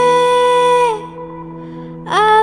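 A girl's singing voice holds one long high note that slides down and stops about a second in, leaving a quieter steady musical drone underneath.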